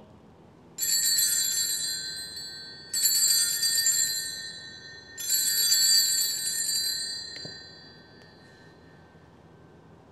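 Altar bells rung in three bursts about two seconds apart, each ringing out and fading, the last dying away slowly: the signal of the elevation of the host at the consecration.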